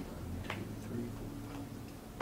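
Quiet room tone with a low hum and a few faint, irregular clicks.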